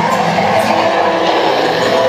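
Loud dark-ride soundtrack: a dense, noisy wash of sound effects with a few held musical tones underneath.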